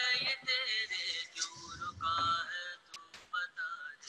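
A song with a male singing voice over musical backing, from a film soundtrack, with a low rumble about halfway through.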